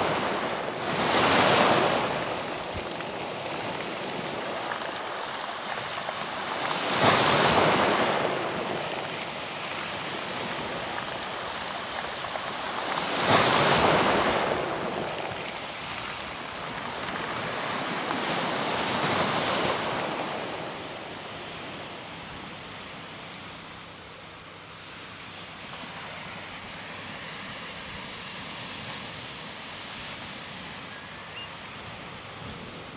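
Waves breaking and washing up a pebbly beach: four swells of rushing surf about six seconds apart, each rising and falling away. In the last third the surges stop and only a quieter, steady rush remains.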